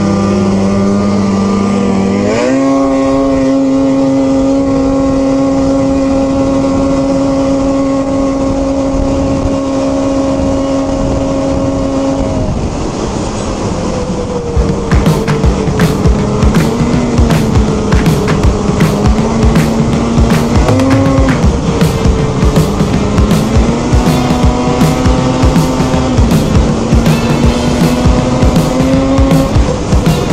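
Two-stroke snowmobile engine pulling up to speed over the first couple of seconds, its pitch rising, then holding one steady high note at cruise. After about twelve seconds the revs dip and rise gently with the throttle. From about halfway, background music with a steady beat plays over it.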